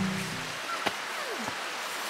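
Steady rush of a shallow creek flowing over stones, with a faint click about a second in.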